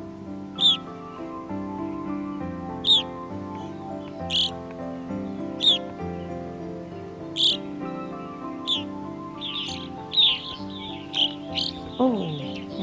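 Evening grosbeaks calling in short, sharp single notes every second or two, crowding into busier overlapping chatter near the end. Soft instrumental music plays steadily underneath.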